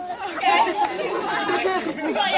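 Several young people's voices talking over one another in lively chatter.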